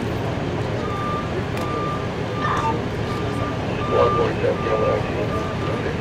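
A vehicle backup alarm beeping, one steady high tone repeating about three times every two seconds, starting about a second in, over a low steady engine rumble, with indistinct voices.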